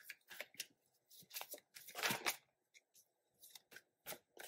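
A deck of tarot cards being shuffled by hand: a string of soft, irregular card slides and snaps, with a longer rustle about two seconds in.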